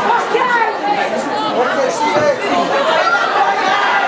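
Several people chattering at once, their voices overlapping continuously so that no single speaker stands out.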